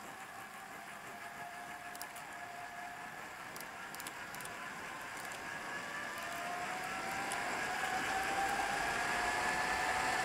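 Tyres humming on asphalt: a steady hum with a couple of pitched lines that rises in loudness and pitch over the last few seconds.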